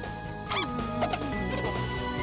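Tense background music score with a quick, high, squeaky electronic chirp that sweeps down in pitch about half a second in, followed by smaller warbling squeaks.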